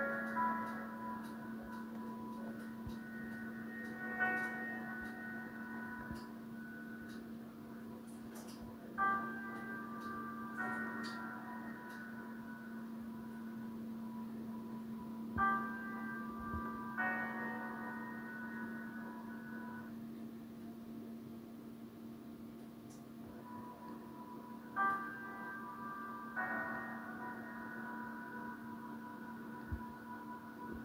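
Quiet, slow film score playing through a laptop's speakers: sustained chords with bell-like notes that come in every few seconds, over a steady low hum.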